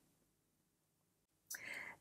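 Near silence, then a woman's short, soft intake of breath about three-quarters of the way in, just before she speaks again.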